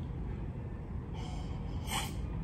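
A person's short breathy intake of air about a second in, lasting under a second, over low room noise.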